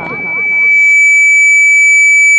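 Public-address feedback: a loud, steady, high-pitched whistle from the microphone and loudspeakers, holding one pitch. It swells up about half a second in and then stays level, with the echo of the last spoken words fading beneath it.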